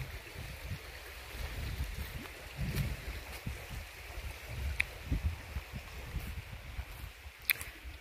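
Steady rushing of a woodland creek running over rocks, with low rumbling on the microphone.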